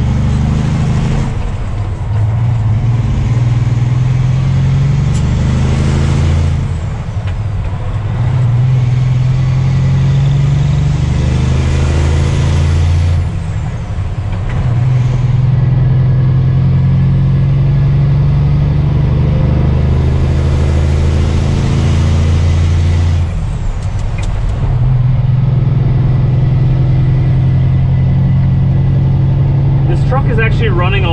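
Semi truck's diesel engine heard from inside the cab, pulling a loaded trailer up through the gears of a manual transmission. The engine note drops out briefly at each of four upshifts and then builds again, each gear held longer than the last.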